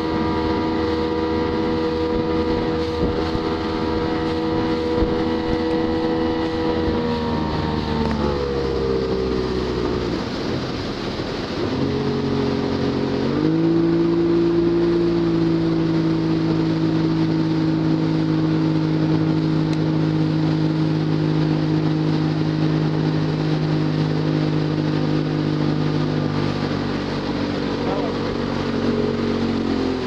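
Motorboat engine running at a steady towing speed; its pitch falls as the throttle is eased about eight seconds in, then picks up again about thirteen seconds in and holds steady, easing a little near the end. Wind and water rush run underneath.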